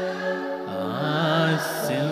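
A man singing a slow devotional chant into a microphone: a long held note, then the melody slides down and back up with a wavering voice, with a short breathy hiss near the end.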